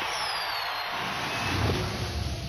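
Whoosh sound effect of a promo trailer: a hissing rush of noise with a faint falling whistle, swelling to a peak about a second and a half in, between two stretches of music.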